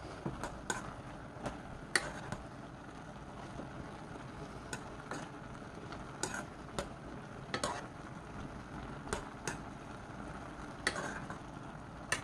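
A spoon stirring soybeans in a pot of simmering soy-sauce and corn-syrup glaze: irregular light clicks of the spoon against the pot over a faint, steady simmer.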